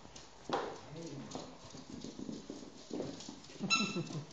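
Two dogs, a Shiba Inu puppy and a larger dog, playing, with claws clicking on the hard floor. A short falling whine comes about half a second in, and a brief high squeal near the end.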